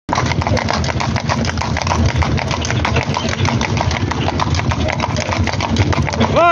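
Two-horse cart rolling along an asphalt road: a steady low rumble of the wheels, with hooves clopping and the harness chains and drawbar clinking and knocking throughout.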